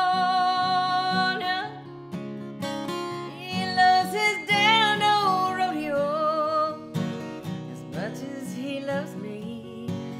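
A woman singing a country ballad over a strummed acoustic guitar, holding one long note at the start and later singing a phrase of long, wavering notes.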